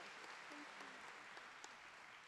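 Faint audience applause, slowly dying away.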